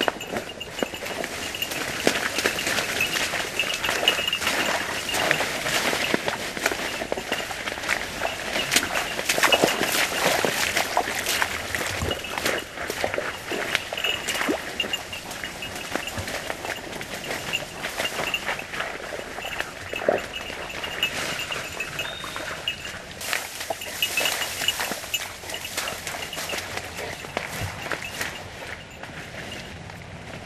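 Footsteps and rustling through dry reeds and shallow muddy water as a hunter and his dog work the cover: a dense, irregular run of crackles, snaps and small splashes.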